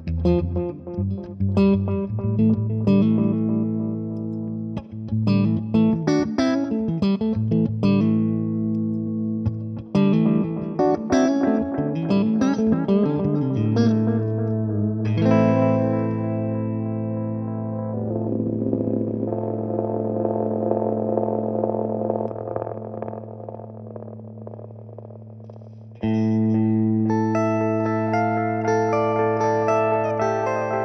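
Electric guitar played through a Brunetti Magnetic Memory tube delay pedal, with picked single notes and chords trailing delay repeats. About halfway a chord is left ringing and slowly fades with its repeats while the pedal's knobs are turned, and a louder new chord comes in near the end.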